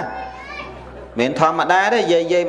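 Speech only: a man preaching in Khmer into a microphone, with a lull of about a second before he talks on in a lively voice.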